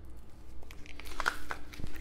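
Crinkling and rustling of frozen vacuum-sealed plastic meat packages being handled, an irregular run of crackles and light clicks that grows busier in the second half.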